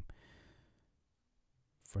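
A man's soft exhaled breath after a spoken phrase, fading out within about a second, followed by a quiet pause before his voice starts again near the end.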